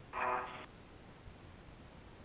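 A short, half-second voice sound on the spacewalk's space-to-ground radio loop near the start, then faint steady radio hiss.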